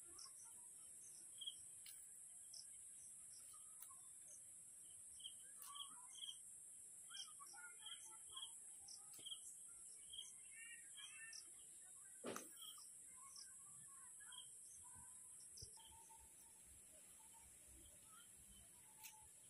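Faint birds chirping: repeated short high chirps and some quicker warbling calls, over a steady high hiss, with a single sharp click a little past the middle.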